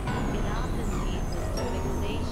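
Experimental synthesizer noise music, plausibly from a Novation Supernova II and a microKorg XL: a dense, steady low rumble under warbling tones, with a high whistle that slides down in pitch at the start and again about halfway through.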